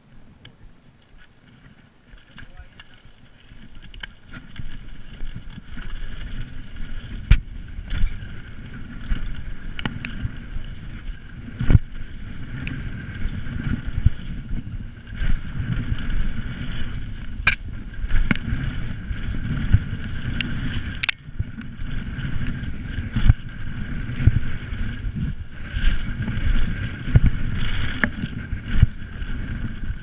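Mountain bike ridden fast downhill on dirt trail, heard from a camera on the bike: a steady low rolling rumble of tyres on dirt that builds up after the first few seconds as the bike gets going. It is broken by many sharp knocks and rattles as the bike hits bumps and lands jumps.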